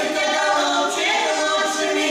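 Russian folk vocal ensemble singing a cappella, several voices holding and sliding between notes together in harmony.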